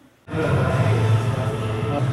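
Music with a strong, steady bass line, cutting in abruptly after a brief silence about a quarter second in.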